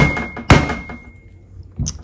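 Claw hammer tapping through a folded rag onto the worm-gear end of a Singer 301's motor, driving the stuck motor down out of the machine's body: two sharp taps about half a second apart, the second leaving a brief metallic ring, then a softer knock near the end.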